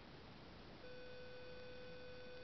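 A steady hum at one pitch, with fainter higher overtones, comes in a little under a second in over faint background hiss.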